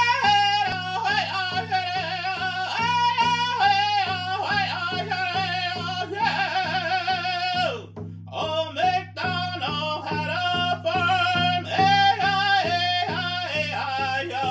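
A man singing in long held notes to a steady beat on a hand-held frame drum, the voice breaking off briefly about eight seconds in.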